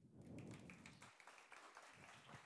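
Faint, scattered light clapping and tapping from an audience, many small quick claps at an uneven pace.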